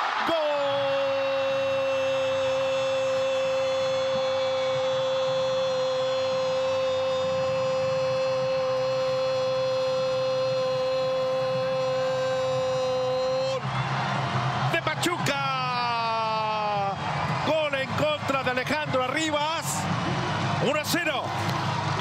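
Football TV commentator's drawn-out goal cry: a single shouted "gol" held on one pitch for about thirteen seconds, then breaking into falling shouts and excited speech. A steady stadium crowd noise runs underneath.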